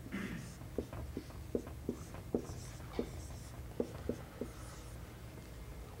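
Chalk writing on a blackboard: a run of about a dozen short, irregular taps and faint scratches as an equation is written out.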